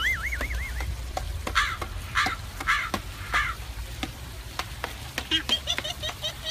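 Edited-in comedy sound effects: a wobbling cartoon twang fading out in the first second, then four honk-like calls about half a second apart, and a quick run of high squeaky chirps near the end, with scattered clicks throughout.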